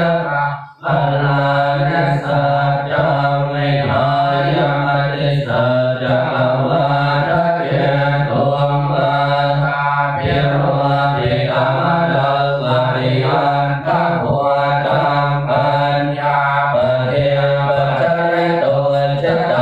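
Thai Buddhist monks chanting Pali in unison: a steady, low, nearly monotone chant with a short breath pause about a second in.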